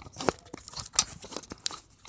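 Handling noise from a phone being fumbled into position: a run of irregular clicks, knocks and rubbing right on the microphone, the sharpest knock about a second in.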